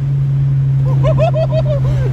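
Steady car engine drone heard from inside the cabin at freeway speed, stepping up in loudness right at the start as the cars accelerate. A person's high, excited voice comes over it from about half a second in.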